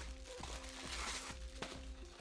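Quiet background music with steady held notes, over the light rustle and a few clicks of packaging being handled as a boxed item is lifted out.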